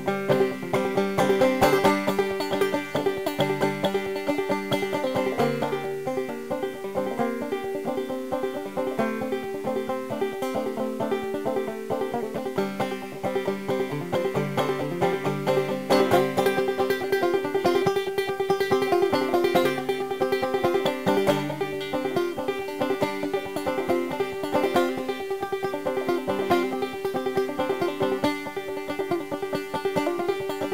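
Solo banjo instrumental break: fast, steady picking of plucked notes over one note that rings throughout, with no singing.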